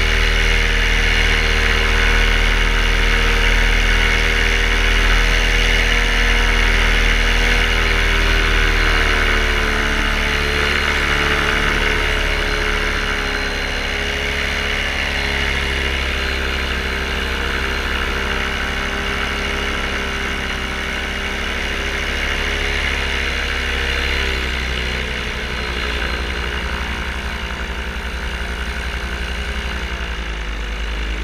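Paramotor engine and propeller running steadily in flight. About ten seconds in the engine note drops slightly and gets a little quieter, then holds at the lower setting.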